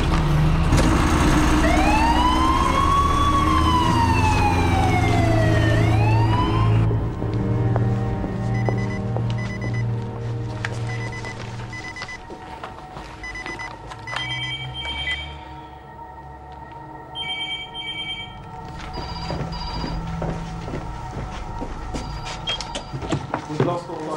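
An emergency siren wails up and then down over a loud low rumble. About seven seconds in, the rumble and siren cut off, leaving a steady low drone with repeated short electronic beeps and telephone-like trills.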